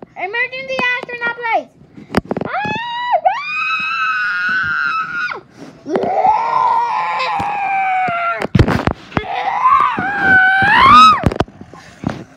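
A child screaming in several long, high-pitched cries, some rising in pitch and then held.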